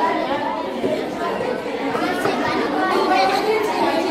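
Crowd of schoolgirls chattering all at once in a large hall: many overlapping voices, steady and continuous.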